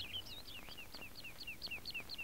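A small bird chirping faintly: a quick run of short, high notes, each falling in pitch, about four or five a second.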